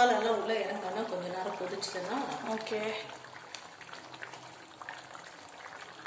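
A person talks for about the first three seconds. After that, a thick pav bhaji mixture is heard softly bubbling and being mashed with a perforated steel masher in a steel kadai.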